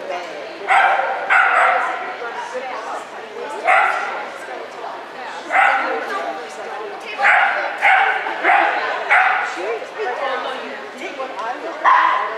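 Sheltie barking in short sharp barks, about nine in all, with a quick run of four near the middle.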